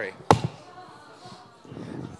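A single sharp thump through the PA about a third of a second in, from the microphone on its stand being handled and adjusted.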